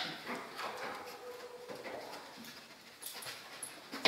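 A detection dog sniffing along a row of wooden scent boxes, with short sniffs, light knocks and clicks. About a second in, the dog gives a faint brief whine.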